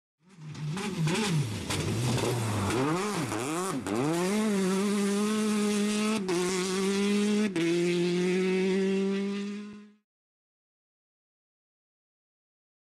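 A race car engine revved in quick rises and falls, then held at steady high revs with two short breaks, fading out near the end.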